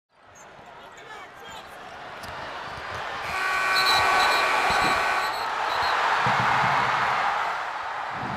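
Basketball arena crowd noise swelling as time runs out. The game-ending horn sounds for about two seconds, starting a little over three seconds in, and the crowd keeps cheering loudly after it.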